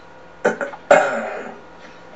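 A person clearing their throat in two short bursts, the second louder and trailing off.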